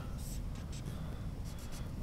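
Marker drawing on a whiteboard: a faint, steady scratching as an arrow is drawn.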